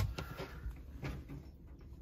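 Radio music from the Sansui 3900Z receiver cuts off abruptly at the very start as the receiver loses power, leaving faint scattered clicks and knocks of handling.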